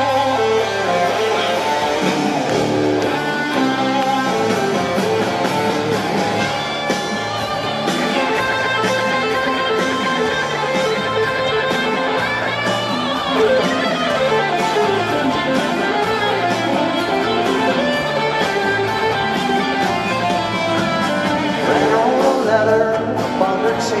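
Live rock band playing an instrumental passage: electric guitar over acoustic guitar and drums, recorded from the audience on a small camcorder's built-in microphone.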